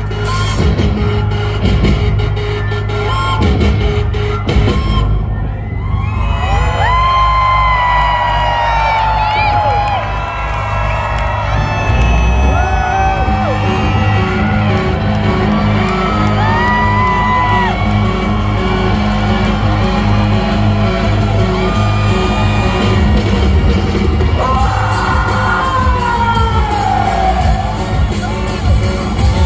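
Live band playing loud amplified rock through a hall PA, with bass, drums and keyboards. Long gliding high-pitched cries rise and fall over the music several times.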